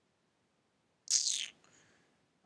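Near silence, broken about a second in by one short hissy sound lasting about half a second, its pitch sliding downward.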